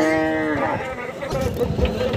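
A cow mooing once, a short call of under a second that dips in pitch as it ends, followed by scattered knocks and a low thump.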